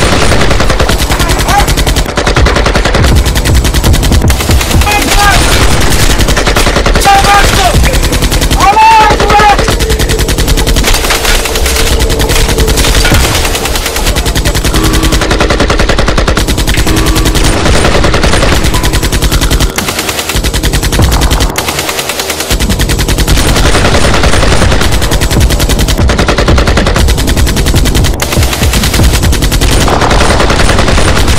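Sustained automatic gunfire from several firearms, rapid shots running together almost without a break, with a couple of brief lulls past the two-thirds mark.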